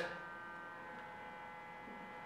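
Faint steady electrical hum from switched-on ozone therapy equipment, with several fixed tones held evenly throughout.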